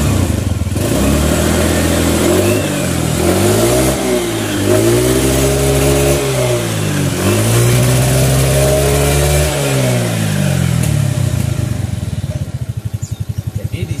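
Suzuki Nex scooter's single-cylinder four-stroke engine revved up and let back down three times, then settling to idle. The CVT judder has gone after the roller housing and rollers were refitted, and the engine sounds much smoother.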